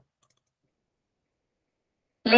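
Near silence, with a few faint clicks in the first half second.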